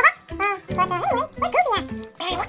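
A voice making short, swooping cartoon-style vocal sounds over upbeat background music.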